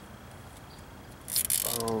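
A man's voice: after a faint steady background, a loud breathy exhale about a second and a quarter in, leading straight into the exclamation 'Oh' near the end.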